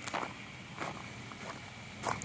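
Faint footsteps on gravel, about three soft steps spaced roughly two-thirds of a second apart.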